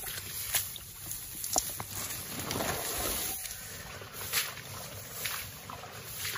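A wet mesh cage trap rustling as it is handled and carried, with a few scattered clicks and knocks and steps through wet grass.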